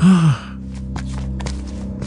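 A short sigh lasting about a third of a second, its pitch falling, followed by soft, steady background music.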